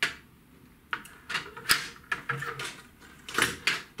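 Scattered clicks and knocks from a metal caliper and carbon feeder rods being handled on a table, the loudest cluster near the end.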